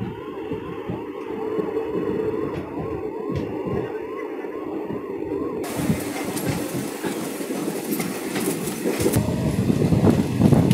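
Passenger train running, heard from aboard as a steady rattle of wheels and carriage. Over it a siren-like electronic whoop repeats about two and a half times a second. About halfway through, the sound changes abruptly to louder wind and wheel clatter.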